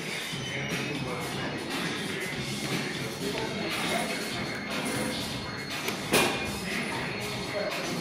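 Gym background music and chatter, with one sharp metal clank about six seconds in, the loudest sound: the loaded EZ curl bar being set down at the end of the set.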